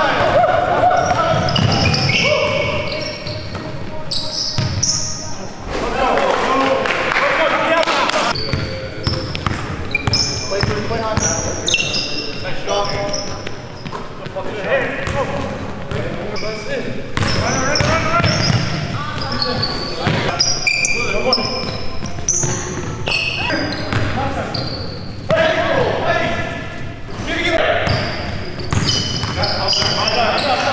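Live indoor basketball game: a ball dribbling on a hardwood gym floor, many short high sneaker squeaks, and players' indistinct calls, all echoing in a large gym hall.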